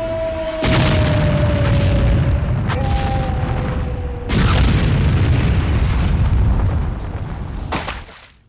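Film explosion sound effect: a heavy boom about a second in, with a long rumble, and a second blast a little after four seconds. Long held tones run over the first half.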